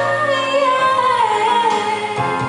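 A young woman singing into a microphone: one long held note that slides slowly downward, over instrumental backing music.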